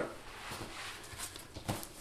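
A camera backpack being slipped off the shoulder and set down on a wooden table: quiet fabric and strap rustling, with a soft knock near the end.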